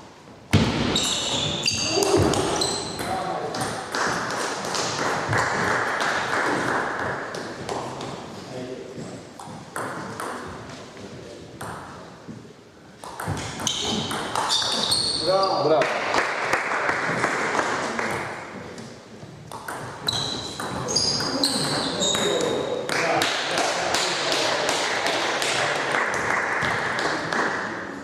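Table tennis played in a sports hall: the ball clicking off bats and table in rallies, with indistinct voices in the background.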